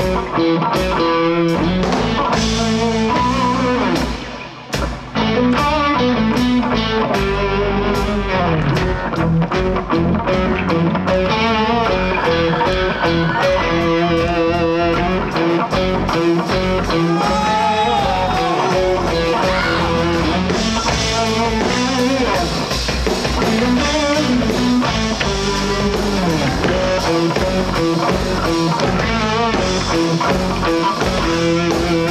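A rock band playing live: electric guitars over a drum kit. The music drops out briefly about four seconds in, then comes back in full.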